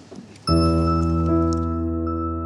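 Background music comes in suddenly about half a second in: held, sustained chords that change about a second later.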